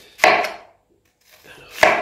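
Kitchen knife slicing thin through an onion onto a plastic cutting board: two crisp cuts about a second and a half apart, the first with a short crunch as the blade passes through the onion.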